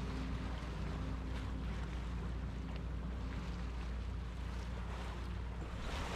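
Boat engine running at a steady drone under way, with water rushing and hissing along the hull.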